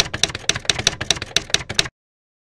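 Typewriter sound effect: a quick run of about a dozen keystrokes, roughly six a second, that stops suddenly just before the end.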